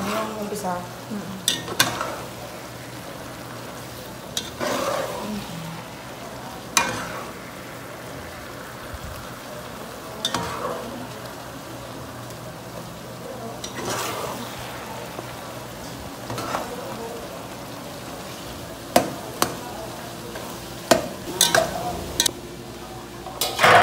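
Metal spatula stirring and scraping sliced hotdogs in thick sauce in an enamel pot over a steady sizzle, one stroke every few seconds. Near the end come a few sharp clinks of metal against the pot.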